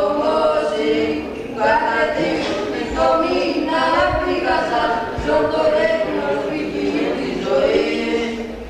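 A group of men's voices singing Greek Orthodox chant in unison, unaccompanied, in phrases with short breaths between them.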